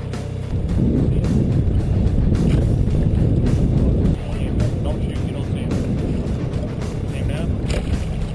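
A boat's motor drones steadily. Its noise swells louder from about half a second in until about four seconds in, then settles back, with scattered light clicks and knocks over it.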